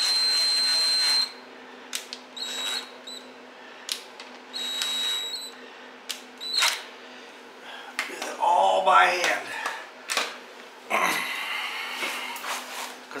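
Cordless drill spinning a socket to run in the differential carrier's bearing cap bolts. It runs for about a second at the start, then twice more in short bursts about two and a half and five seconds in. Light clicks of metal tools are scattered between the runs.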